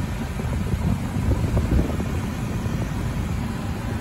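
Air-conditioning blower running in a Hyundai Grand Starex van's cabin: a steady rushing hiss over a low, uneven rumble.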